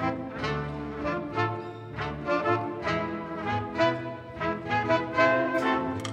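Live small jazz band playing a swing tune: trumpet and tenor saxophone carry the melody over upright bass, piano and drums, with cymbal hits on the beat.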